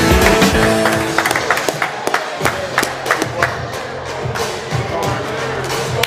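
Background music: a bass-heavy track whose low end drops out about a second in, leaving sharp percussive hits over a thinner melody.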